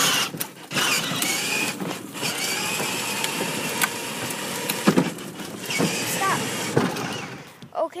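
Steady rushing noise of a car moving off, with a faint whine and a few sharp knocks. Short voice sounds come in near the end.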